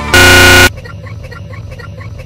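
A harsh, distorted buzzer-like blare at full loudness, lasting about half a second and cutting off abruptly. Quieter music with a quick repeating beat follows.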